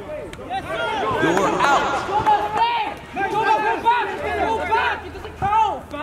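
Several men's voices talking and calling out over one another, with no words clear.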